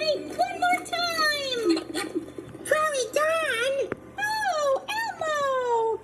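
High-pitched cartoon character voices calling out short, gliding exclamations, played from a computer's speakers and picked up by a phone.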